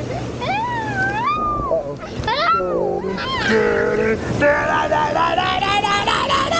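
A young child's high-pitched wordless squeals, the voice sliding up and down, with a lower voice briefly in the middle and quick giggling near the end. Underneath runs the steady rush of hot tub jets churning the water.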